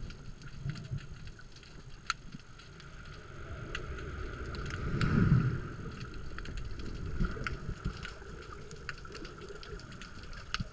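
Sea surge heard underwater just below the surface: muffled water movement swells into a rush as a wave breaks overhead about five seconds in, with scattered sharp clicks throughout.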